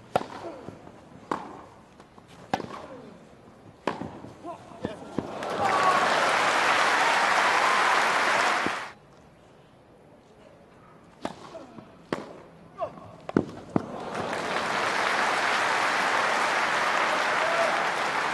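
Tennis ball struck back and forth with rackets on a grass court, about one hit every 1.3 s, then crowd applause for about three seconds that stops sharply. A short second point of a few racket hits follows, and applause rises again near the end.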